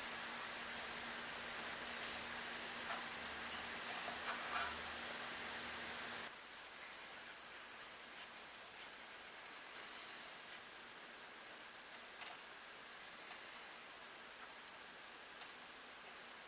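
Quiet room tone: a steady hiss with a low hum that cuts off suddenly about six seconds in. After that, a few faint light clicks and rustles come from a soaked wooden plank being handled against a heated plank-bending iron.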